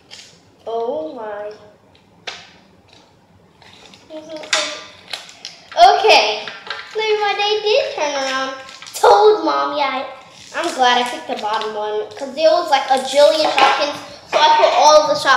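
A young girl's voice, vocalising without clear words and mostly from about four seconds in, with a few short clicks from small plastic toys and packs being handled.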